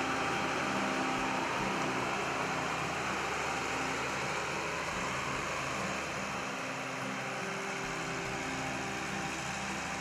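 New Holland CR9070 combine's diesel engine running steadily, a low even hum under a broad rushing hiss.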